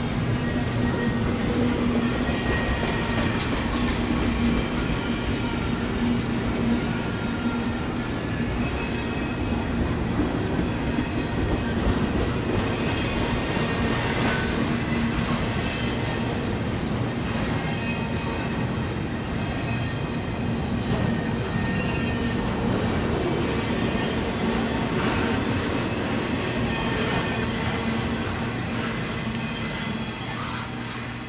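Double-stack intermodal well cars rolling past on jointed track: a steady rumble and clatter of steel wheels on rail that eases slightly near the end.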